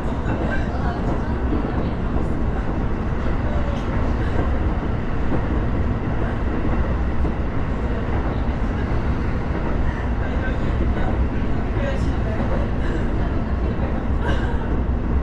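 Sotetsu commuter train running at about 60 km/h, heard from inside the car: a steady rolling rumble of wheels on rail, with a few faint clicks near the end.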